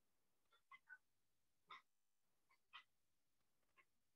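Near silence: room tone with a few faint, very short chirp-like sounds scattered through it.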